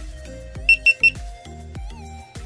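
Three short, high beeps from a GoPro Hero3+ camera about a second in, as it powers up partway through a firmware update, over background music with a steady beat.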